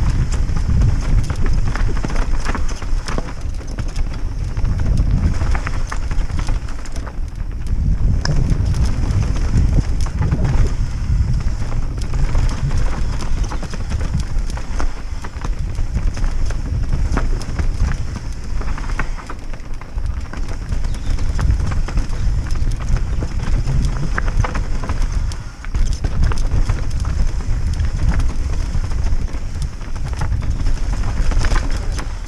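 Mountain bike descending a rough, rocky trail: a continuous low rumble of tyres over rock and dirt with dense, irregular clattering from the chain and frame as the bike hits the bumps.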